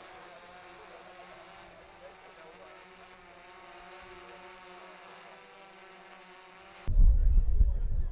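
Faint, steady buzz of several close tones from a quadcopter drone's propellers hovering above. About seven seconds in, it cuts abruptly to loud wind rumble on the microphone.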